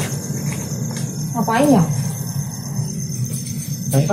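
Crickets chirping in a steady, fast, even pulse over a low background rumble, with one short vocal sound from a person about a second and a half in.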